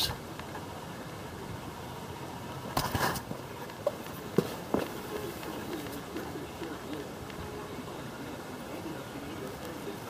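Outdoor background noise with handling sounds from a handheld camera being moved around: a brief rustle about three seconds in and a couple of light clicks shortly after.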